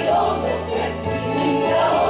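Mixed folk choir of men's and women's voices singing a Belarusian song together.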